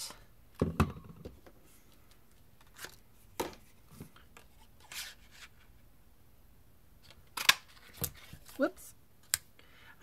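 Handheld craft paper punch (Everyday Label Punch) cutting through card stock: a few sharp clicks and clunks, one about a second in and the loudest near the end, with soft paper handling between them.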